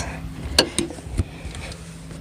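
A few clicks and knocks from a car's rear seat release latches and seatback as the seat is folded down, spread over about the first second and a quarter.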